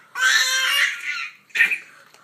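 Baby yelling: a high-pitched yell for most of the first second, then a short second cry about a second and a half in.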